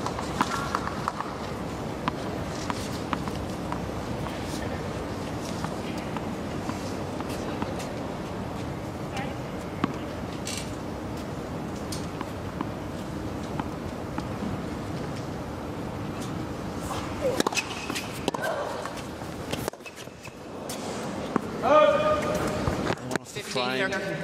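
Tennis stadium ambience: a steady crowd murmur with a few sharp ball bounces and racquet hits on a tennis ball, the hits bunched during a rally after about 17 seconds. Voices come in near the end.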